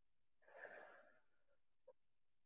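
Near silence, with one faint breath from a woman close to a headset microphone about half a second in.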